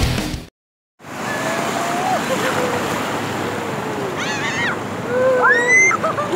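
Surf washing through shallow water, with excited shouts and a high rising squeal from boys riding bodyboards in the waves. Before that, a music track cuts off in the first half second, followed by a brief silence.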